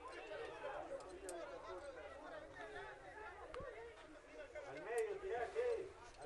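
Faint, distant voices of football players and spectators talking and calling out around the pitch.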